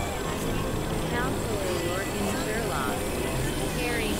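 Experimental electronic noise from synthesizers: a dense, steady low rumbling drone with warbling tones gliding up and down above it.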